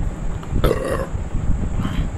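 A short throaty noise from a man, about half a second in, with a shorter one near the end, over a steady low background rumble.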